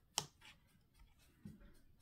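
Small sharp clicks of a diamond-painting drill pen tapping drills onto the canvas: one loud click just after the start, a fainter one right after it, and a softer, duller knock a little past the middle.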